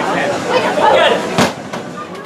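People's voices and chatter, then one sharp knock about one and a half seconds in, after which the sound drops quieter.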